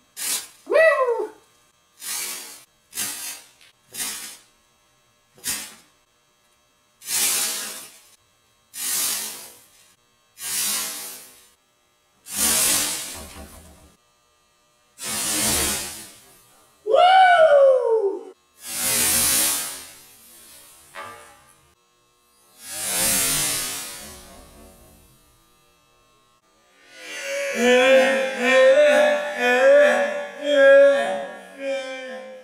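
Lycopodium spore powder flashing into fireballs in a candle flame: more than a dozen separate whooshing bursts, short ones in quick succession at first, then longer, louder ones spaced a few seconds apart. A voice whoops twice, and music begins near the end.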